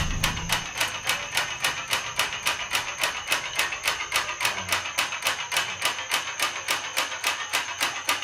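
Steady, even clicking percussion, about five sharp ticks a second, with no melody yet.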